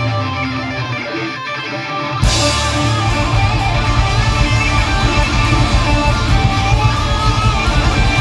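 Live rock band playing an instrumental passage led by electric guitar. For the first two seconds the sound is thinner, then the drums and the full band come in sharply and carry on steadily.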